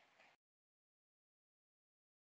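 Near silence: the audio drops to complete digital silence, with only a faint fading tail in the first moment.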